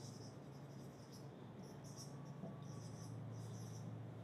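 Faint marker strokes on a whiteboard: a quick run of short, scratchy squeaks. A steady low hum runs underneath.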